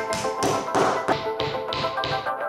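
Background music with a quick run of about six sharp taps over it, loudest just before the middle.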